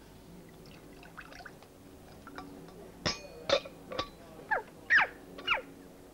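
Water being poured from a small jug into a play tray: faint dripping and trickling, then from about three seconds in a run of sharp splashes and glugs, several quickly dropping in pitch.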